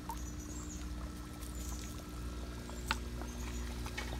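Water dripping and splashing faintly as an aquarium net is lifted out of and worked through a small pond tub, over a steady low hum. There is one sharp click about three seconds in.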